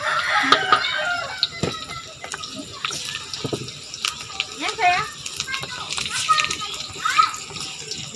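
Sliced garlic and dried anchovies sizzling in hot oil in a wok, with a wooden spatula scraping and clicking against the pan as they are stirred. A few brief pitched calls sound in the background.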